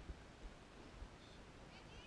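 Near silence: faint outdoor background with a low rumble and a couple of faint, short, high chirps near the end.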